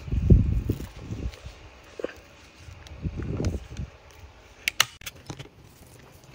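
Muffled bumps and rustles of gloved hands working plastic-coated wire around a small wooden log, in three short bouts, then a few light clicks near the end.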